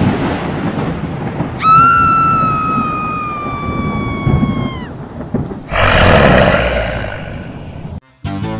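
Halloween sound effects: a low rumble like thunder, with a long, clear, high wailing tone that comes in about a second and a half in, slides slowly down for about three seconds and stops. A loud harsh noisy burst follows about two seconds later and fades away.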